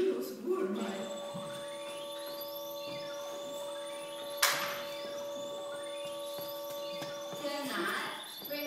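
Electronic sound effect: a steady humming drone of several held tones with repeated rising whistling sweeps laid over it, about one every second and a half, and one sharp click about halfway through.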